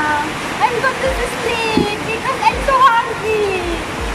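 A voice talking or singing indistinctly in short broken phrases over a steady rushing noise.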